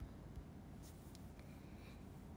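Near silence: quiet room tone with a few faint, short scratchy sounds.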